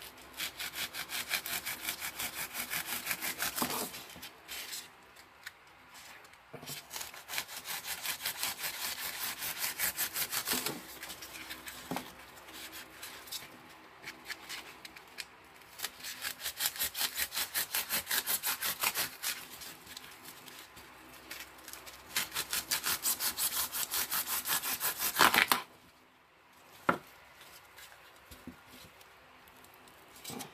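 A knife sawing back and forth through the stems and base of an artificial flower arrangement, in several runs of quick strokes with short pauses between. Near the end, a single sharp tap.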